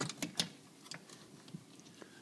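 Light clicks and scrapes of a range power cord being pulled up through the metal cord clamp (strain relief) on the back of an electric range: three sharper clicks in the first half second, then faint scattered ticks.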